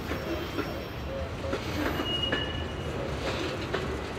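Freight train's boxcars rolling past: a steady wheel-on-rail rumble with clicks from the wheels, and brief high wheel squeals about halfway through.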